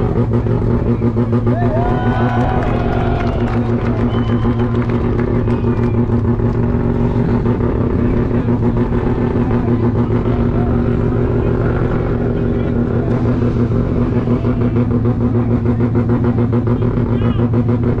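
Rotary-engined burnout car held at steady high revs, with one constant, unchanging engine note throughout.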